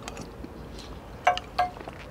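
A metal spoon clinking twice against a small stainless steel cup, the two clinks a third of a second apart, each ringing briefly.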